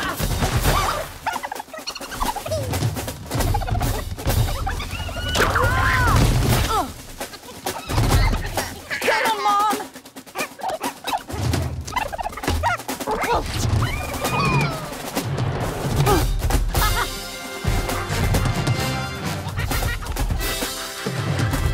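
Animated creatures' squawking, gobbling cries, several rising and falling calls, amid chase sound effects of thuds and knocks, with film score music underneath, most plainly near the end.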